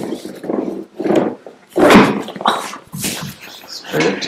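A person's voice making about five short groaning sounds in a row, without words, during a side-lying chiropractic spinal adjustment.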